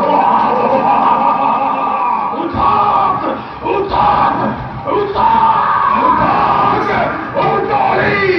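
Live music for an Assamese bhaona stage performance, with loud, drawn-out voices over it; low beats come in about two and a half seconds in.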